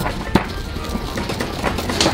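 Stone pestle grinding dried spices and salt in a granite mortar, with irregular knocks and scrapes, over background music.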